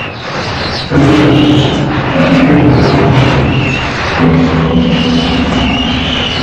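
Geronimon's monster roar sound effect from Ultraman: a loud, drawn-out growling roar with a low pitched rumble under a high wavering cry, growing louder about a second in.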